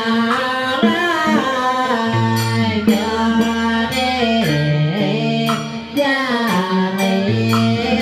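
Vietnamese southern ceremonial (nhạc lễ) band playing: a bowed two-string fiddle (đàn cò) carries a sliding, voice-like melody over steady drum strikes, electric guitar and low bass notes that step between pitches.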